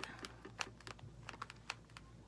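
Faint, irregular light clicks and taps, about eight to ten in two seconds: handling noise as a sugar glider squirms in a gloved hand.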